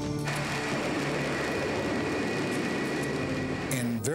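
A steady rushing roar of jet propulsion, over quiet background music. It starts just after the beginning and cuts off sharply shortly before the end.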